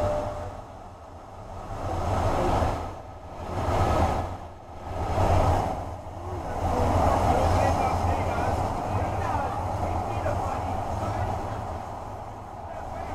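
Playback of a city soundscape: indistinct voices over a low, steady hum of urban noise, swelling and fading several times. The swells are the installation's sound responding to hands pressed into its stretchy surface.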